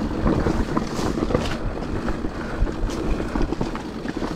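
Mountain bike ridden fast down a rough dirt singletrack: wind rushing over the camera microphone, with tyre rumble and a constant rattle and clatter from the bike over the rough ground, and a few sharper knocks along the way.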